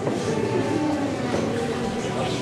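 Steady background murmur of a crowded hall, with faint, indistinct voices under an even hiss.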